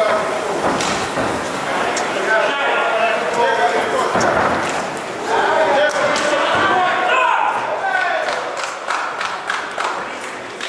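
Crowd and cornermen shouting indistinctly in a large hall during a cage fight, with scattered thuds of strikes landing and bodies hitting the canvas.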